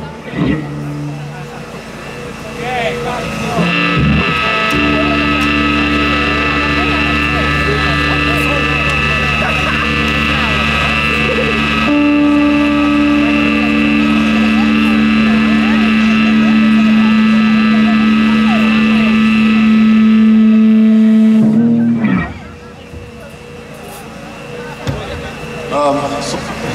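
Electric guitar held in a sustained, droning chord through an amplifier, with a low hum under it. The pitch shifts downward about halfway through, and the drone cuts off suddenly a few seconds before the end.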